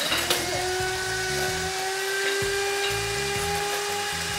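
Electric hand mixer running at one steady speed, its twin beaters whisking batter in a glass bowl: a steady high motor whine.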